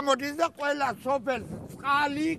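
An elderly man speaking loudly and agitatedly in short bursts, his voice quavering in pitch.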